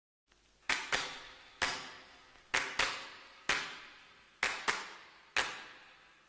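Percussion intro of a pop song: sharp, echoing drum hits in a repeating pattern of two quick hits and then a third, the cycle coming round about every two seconds, starting under a second in.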